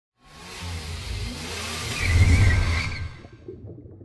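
Logo intro sound effect of a car engine revving and rushing past. It swells from the start, is loudest a little past two seconds in, and fades away by about three and a half seconds.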